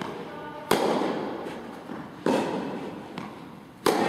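Tennis ball being hit in an indoor tennis hall: three sharp hits about a second and a half apart, each with a long echo, and a fainter knock just before the last one.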